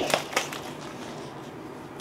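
Faint handling noise from a foam cup and a cup of dry macaroni: two light clicks near the start, then quiet room tone.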